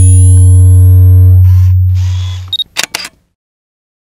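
Intro sound effects: a loud, deep hum lasting about two and a half seconds, then a quick run of camera shutter clicks with a short high beep, cutting off about three seconds in.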